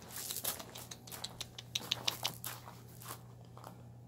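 Rottweiler puppies moving about on a concrete floor: scattered light clicks and scuffs of small claws and paws, thinning out near the end, over a low steady hum.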